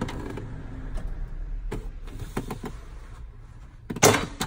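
A low steady hum with a few light clicks, ending in a sudden loud clunk: the EZ Lock wheelchair docking latch releasing after Release is tapped in its app.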